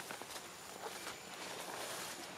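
Footsteps and rustling through leafy undergrowth: irregular crackles of stems and dry leaves over a soft rustle of foliage, a little louder in the second second.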